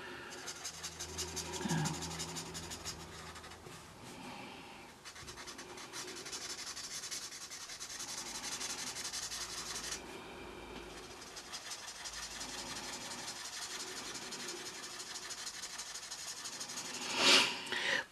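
Promarker alcohol marker's chisel nib rubbing on colouring-book paper in a steady run of quick, short strokes as it fills in a solid area of colour. A brief louder sound near the end.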